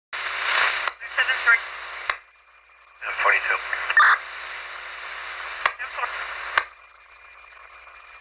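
Police scanner radio traffic: several short, hissing transmissions with unintelligible voices. Each ends in a sharp squelch click, with brief quieter gaps between.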